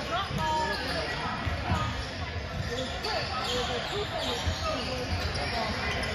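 Basketball bouncing on a hardwood gym floor, with spectators and players talking throughout in a large gym.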